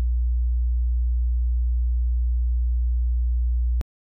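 Steady, very low pure sine tone, a deep electronic hum at constant level, that cuts off suddenly near the end, followed by a brief click.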